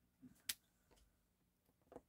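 Near silence with one short, sharp click about half a second in: a clear acrylic stamp block being lifted off the paper and handled.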